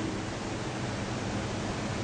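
Steady hiss of background noise with a faint low hum, and no other sound.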